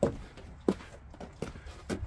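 Footsteps on wooden deck boards: about four short, evenly paced steps.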